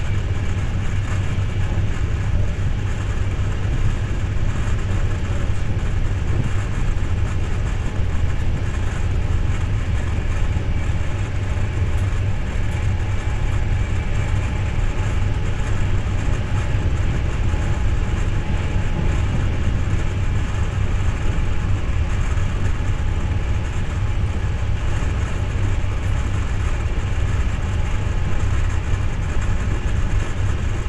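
Steady low rumble of a CityNightLine sleeper train running along the line, heard from inside the passenger coach: wheel-on-rail and running-gear noise, even throughout with no distinct rail-joint clicks.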